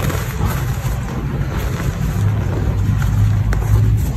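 Reformed gym chalk crunching and crumbling as a block is broken apart by hand and the fingers dig into the powder, with a few faint crackles. A steady low background rumble is louder than the chalk throughout.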